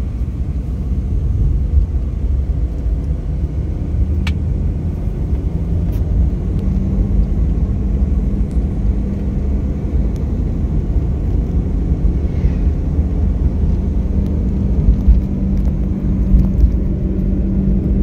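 Car moving along a road, heard from inside the cabin: a steady low noise of engine and tyres with a faint steady hum, and one light click about four seconds in.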